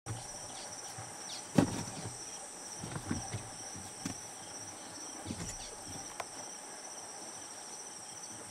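Steady high-pitched insect chorus, like crickets, with a sharp thump about a second and a half in and a few softer knocks after it.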